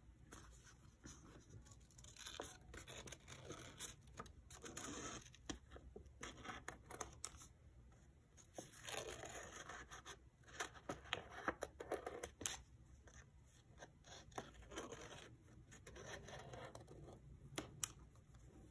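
Scissors snipping through sketchbook paper: a faint, irregular run of short cuts, with the paper rustling as it is turned between snips.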